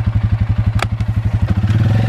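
ATV engine idling with an even pulsing beat, a single sharp click about a second in, then the engine speeding up and running steadier near the end.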